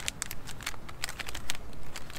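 Plastic snack wrapper crinkling as it is handled in the hands, an irregular run of sharp crackles.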